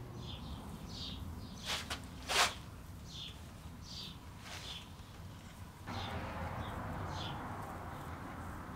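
Small birds chirping in short, falling high notes, repeated every second or so. About two seconds in there are two brief loud noises, and a steady hiss starts about six seconds in.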